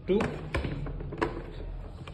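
Three short, sharp plastic clicks and taps from the front cutter cover of a TVS RP3200 Plus thermal receipt printer as it is gripped and worked loose at its two clip locks.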